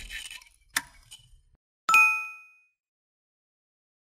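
Subscribe-button animation sound effects: a sharp click a little under a second in, then a single bright bell ding about two seconds in that rings out and fades within about half a second.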